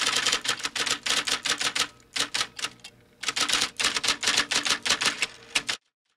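Typewriter sound effect: rapid keystroke clicks in three runs, with short pauses about two and three seconds in, stopping abruptly near the end.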